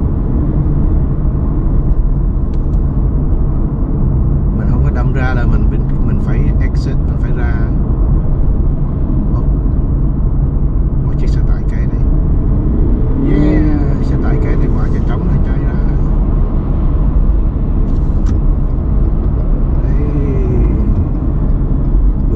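Steady low road and engine rumble heard from inside a car cruising on a freeway, with a few short bursts of voice over it.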